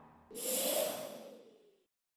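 A short whoosh sound effect that starts suddenly about a third of a second in and fades away over about a second and a half.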